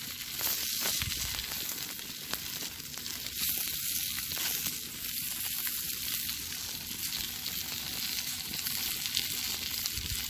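Chicken pieces sizzling on aluminium foil over a charcoal fire, a steady hiss with a few faint ticks.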